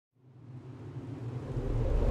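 Intro sting sound effect: a low rumble fades in about a third of a second in and swells steadily louder, with a rising hiss building over it.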